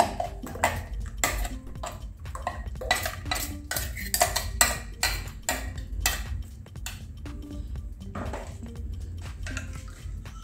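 Metal spoon scraping and clinking against the inside of a stainless-steel mixer-grinder jar as ground paste is scraped out, in many irregular clinks that thin out near the end.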